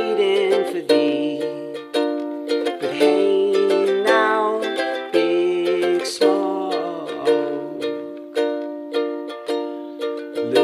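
Ukulele strummed in a steady chord rhythm, the chords re-struck about once a second, with a man's singing voice over it in places.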